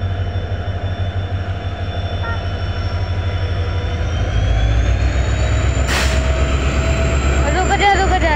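Heavy low rumble of a train passing on the next line, hauled by a WDP4D diesel locomotive; it grows louder about halfway through as the locomotive comes alongside, with a faint high whine rising in pitch, and a sudden rush of noise just before six seconds as it goes by close.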